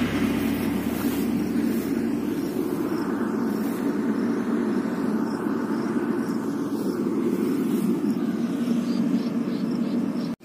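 Rice combine harvester's engine running steadily.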